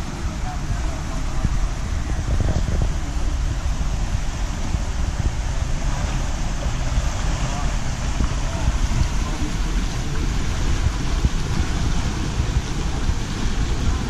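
Wind buffeting the microphone: an uneven low rumble with a steady rushing hiss above it.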